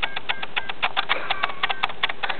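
Rapid, irregular light clicks, several a second.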